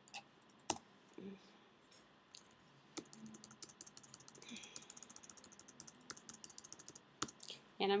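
Computer keyboard typing, faint: a few separate keystrokes, then a quick run of key clicks for about four seconds, ending in one sharper click.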